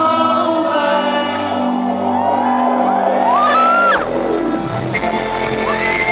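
Live synth-pop played on a festival stage through the PA: a female lead vocal over sustained synthesizer chords, with crowd shouts and whoops. About four seconds in, deep bass comes in and the arrangement shifts.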